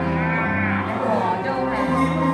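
Small live band playing a blues song: violin, keyboard and guitar with a male voice, and a strongly wavering high note in the first second.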